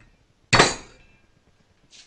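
A single sharp knock on a glass whisky bottle about half a second in, with a brief glassy ring as it fades: a hand pressing the stopper back into the bottle.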